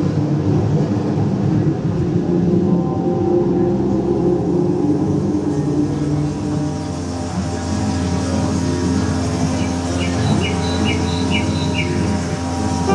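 Projection-mapping show soundtrack: held musical tones over a low rumbling sound effect, the rumble deepening about halfway through. Near the end a run of about five short, high chirps.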